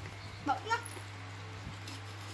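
Two brief vocal sounds about a quarter second apart, each a short pitched call that bends up and down, over a steady low electrical hum.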